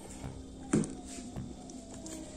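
Soft background music with held tones, and a short sharp knock about three-quarters of a second in as a stack of game cards is handled.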